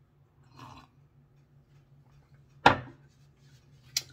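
A faint sip of coffee from a ceramic mug, then a sharp knock about two-thirds of the way through as the mug is set down on the desk, followed by a smaller click just before the end.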